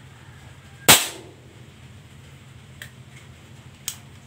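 A PCP air rifle fires a single sharp shot about a second in, with a brief ring-out. Two light mechanical clicks from handling the gun follow near the end.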